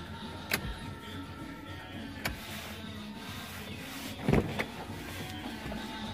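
Steady low hum inside a car cabin, with faint music, a couple of light clicks, and a louder thump about four and a half seconds in.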